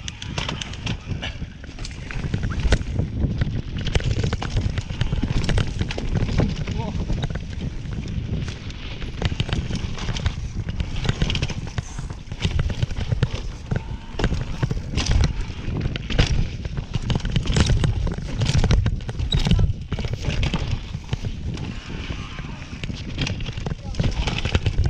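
Mountain bike ridden fast down a rough dirt trail, heard from a camera on the bike: wind buffeting the microphone in a constant low rumble, with frequent clattering knocks as the bike runs over bumps and roots.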